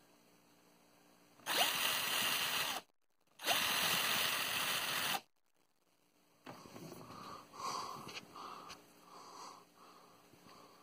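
Drill Master cordless drill's brushed motor run twice in short bursts, each spinning up with a quick rising whine, then stopping. After that come quieter, uneven sounds.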